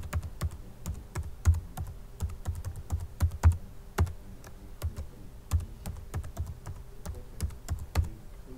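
Computer keyboard being typed on: an uneven run of clicking keystrokes with short pauses between bursts.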